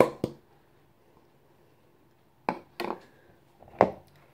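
Sharp knocks of a plastic bowl and a metal sieve being tapped together as flour is tipped into the sieve: two knocks at the start, then after a pause of about two seconds a quick cluster of knocks and one more near the end.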